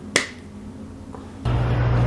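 A single sharp snap just after the start. About a second and a half in, a steady low rumble of street traffic cuts in.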